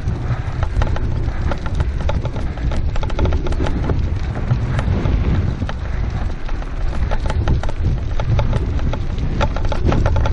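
Wind buffeting the helmet microphone with a steady low rumble, over irregular crunching and clicking from moving fast along a dirt road behind two pulling dogs.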